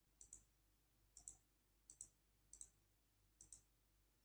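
Computer mouse button clicking, faint, five times at irregular intervals about two thirds of a second apart; each click is a close pair of ticks, the press and the release of the button.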